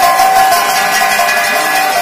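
Metal bells ringing with repeated strikes, their steady ringing tones sustained throughout.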